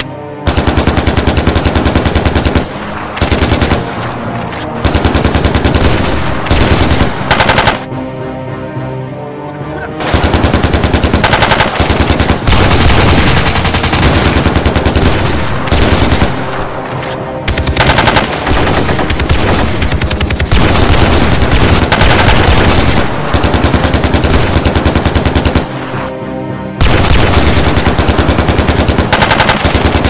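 Bursts of rapid automatic rifle fire, each lasting a few seconds and separated by short lulls, the shots coming many to the second.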